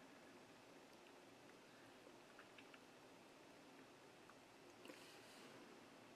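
Near silence: room tone, with a few faint ticks about halfway through.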